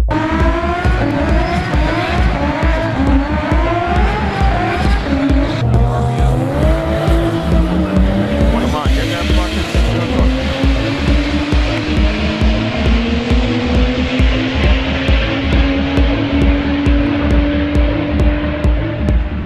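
Toyota Supra drag car revving hard in short rising bursts with tyre squeal during a burnout, then a long rising pull as it launches and accelerates, settling to a steady held note near the end. A dance track with a steady fast kick-drum beat plays over it.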